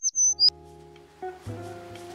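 A few quick high-pitched bird-chirp tweets, a sound effect, in the first half second, then background music with plucked guitar notes starts up.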